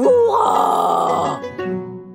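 A voice crying out a long victory whoop, "Ouaaa!", that sweeps sharply upward and is held for about a second and a half before fading, over soft background music.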